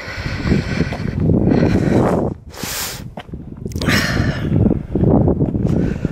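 Wind buffeting the camera's microphone in gusts, coming in loud rushes that rise and fall, with brief lulls.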